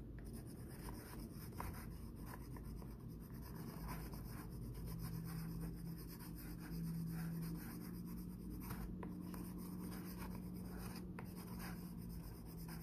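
Wax crayon scribbling on a cardboard toilet paper tube: quick, faint strokes as the top of the tube is coloured in while it is turned by hand. A low steady hum joins in about five seconds in.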